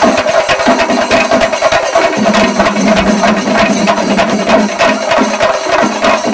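Chenda melam: a group of chenda drums beaten with sticks in a loud, fast, unbroken rhythm.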